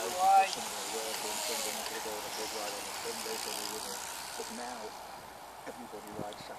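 A bunch of track bicycles riding past with a tyre-and-chain hiss that fades as the riders move away. A short loud shout comes just after the start, with faint talk throughout.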